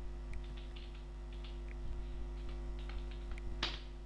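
Computer keyboard keystrokes: scattered light key clicks while a command is corrected, then one louder, sharper keypress near the end as it is entered. Under them runs a steady electrical hum.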